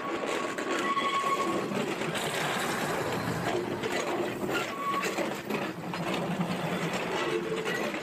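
A train running along the tracks, with a steady, even noise throughout. A steady high tone sounds for the first second or two and again briefly about five seconds in.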